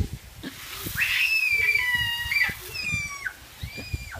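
High-pitched squeals from young children playing in a lawn sprinkler: a long held shriek, then a shorter one about three seconds in, and another starting near the end.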